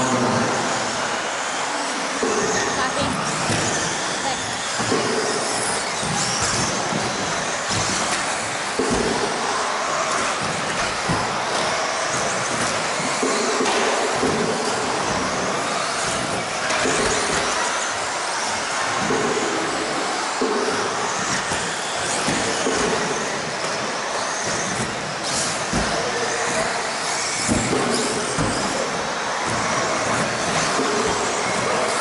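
Electric 2WD stock-class RC buggies racing on an indoor carpet track: motors and tyres make a steady, loud noise that echoes around a large metal shed.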